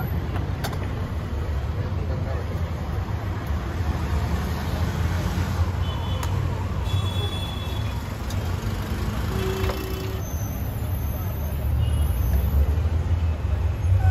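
Steady low rumble of city street traffic, with indistinct voices and a few short high tones over it.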